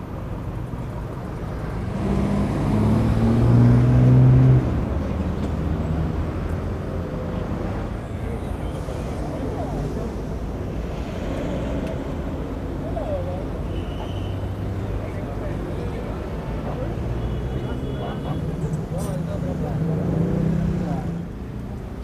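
Street traffic: car engines running close by as vehicles pass slowly, with voices in the background. The engine sound is loudest a few seconds in, drops suddenly, and swells again near the end.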